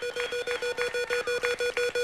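Big Wheel game-show wheel spinning, its pegs clicking rapidly against the pointer's flapper, about ten clicks a second.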